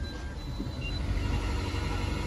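Low steady rumble of a Toyota Corolla Verso's 1.6-litre 1ZZ four-cylinder petrol engine and tyres, heard from inside the cabin as the car runs slowly over concrete.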